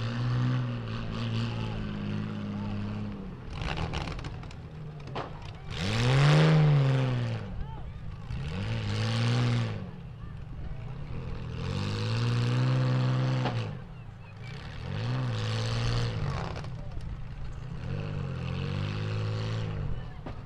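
Demolition derby car engines revving hard in repeated surges, each climbing and falling back over about a second, the loudest about six seconds in, as the wrecked cars push against each other.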